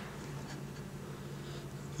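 Quiet room tone: a steady low hum with a faint rustle, and no distinct events.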